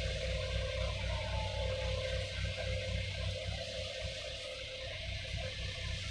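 Diesel engines of garbage trucks idling: a steady low hum with a faint wavering whine above it.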